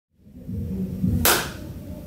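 A single sharp hand clap a little over a second in, ringing briefly in the room, after a low rumble.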